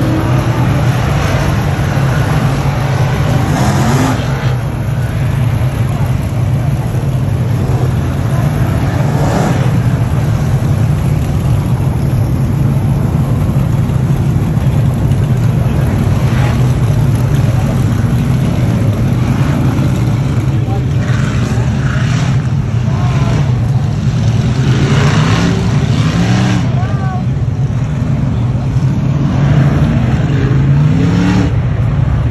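A field of dirt-track modified race cars running around the track: a steady, loud massed engine drone with cars swelling past, and engines rising in pitch as they accelerate about four seconds in and again near the end.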